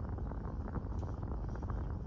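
Steady low rumble inside a car's cabin, with faint crackles and small clicks over it.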